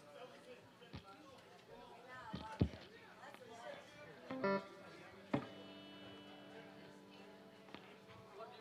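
Electric guitar between songs: a few sharp handling knocks, then a chord struck about five seconds in that rings out for nearly three seconds, over quiet bar chatter.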